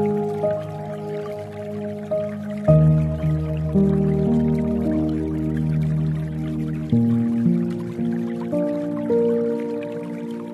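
Slow, soft piano music with held chords, a new chord coming in about three seconds in and again about seven seconds in, over a background sound of dripping water.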